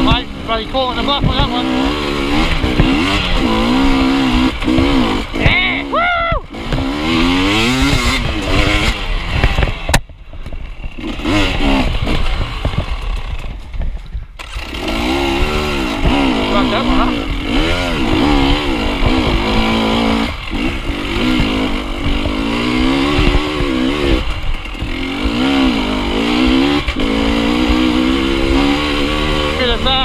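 KTM dirt bike engine revving up and down under changing throttle on a rough trail. It drops away sharply about ten seconds in and builds back up a few seconds later.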